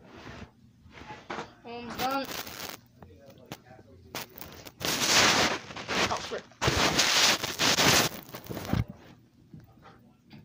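Loud rustling and scraping handling noise on the phone's microphone, in two long stretches split by a sudden break, as the phone is knocked and moved. Before that, a few light clicks and a short wordless vocal sound.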